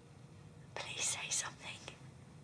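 A woman whispering a few breathy, tearful words, starting just under a second in and lasting about a second.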